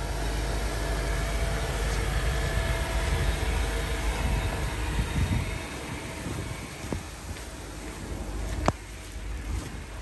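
Low rumbling wind noise on a phone microphone outdoors, with two sharp clicks near the end, the second louder.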